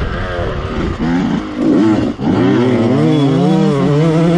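Yamaha dirt bike engine running under throttle while being ridden, its pitch rising and falling. The pitch dips sharply about two seconds in, then climbs and holds higher.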